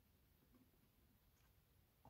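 Near silence: room tone, with a couple of very faint small ticks.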